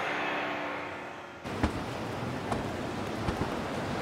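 A low steady hum inside a car. About a second and a half in, it cuts abruptly to louder outdoor traffic noise, with a sharp click and a few fainter clicks after it.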